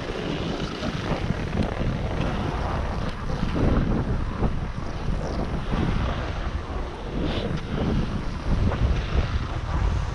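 Wind buffeting the camera microphone while skiing downhill, mixed with the hiss and scrape of skis sliding over packed snow.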